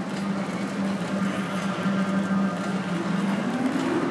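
Ice rink hall ambience: a steady low hum under a wash of background noise, the hum fading in the last second.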